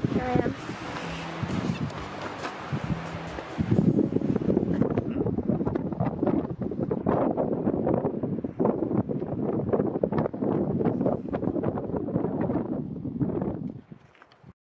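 Wind buffeting the microphone in uneven gusts, with indistinct voices under it; it cuts off near the end.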